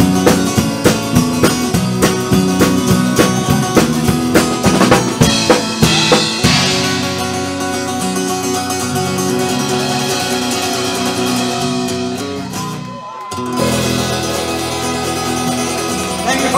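Acoustic guitar strummed hard in a fast, steady rhythm, then from about six seconds in chords left to ring more smoothly; the playing dips briefly near the end before the strumming picks up again.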